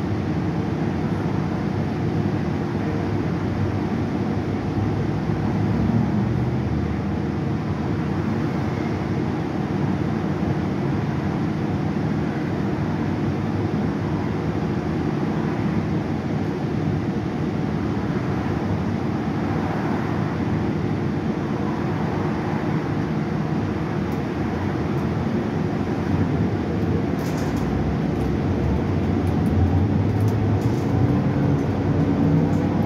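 Cabin noise of a 2015 Gillig 29-foot hybrid bus underway, heard from a passenger seat: a steady drone from its Cummins ISB6.7 diesel and Allison hybrid drive mixed with road noise. A few light clicks come near the end.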